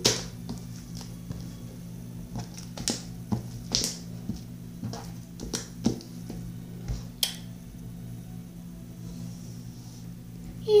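Sticky brown glue slime being stretched and pressed by hand, giving scattered irregular clicks and pops over a steady low hum.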